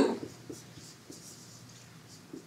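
Dry-erase marker writing on a whiteboard: soft stroke scratches with a couple of short, faint squeaks.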